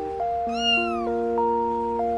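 A single cat meow about half a second in, rising and then falling in pitch, over background music of steady, chime-like electronic notes.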